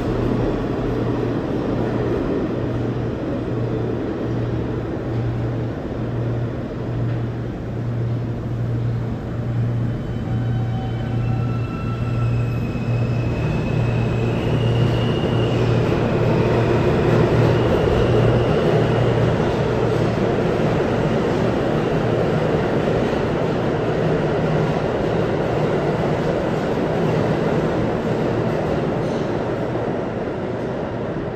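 New York City subway train running in an underground station: steady rumble and low hum, with a faint high motor whine that steps upward in pitch about halfway through, when the sound is loudest.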